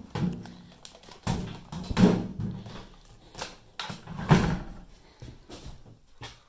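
Handling noise as a bulky VHS camcorder and its cables are lifted out of a soft carrying bag and set on a table: several knocks and rustles, the loudest about two seconds and four seconds in.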